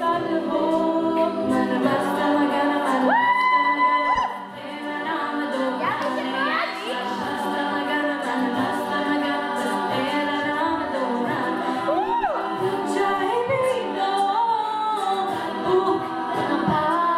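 Women's a cappella group singing in close harmony: sustained chords underneath while a lead voice slides up to a held high note about three seconds in, with swooping melodic glides later on.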